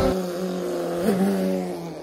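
Recorded singing cuts off at the start, leaving a man's voice holding one long closed-mouth hum with a small rise in pitch about a second in, fading out shortly before he laughs.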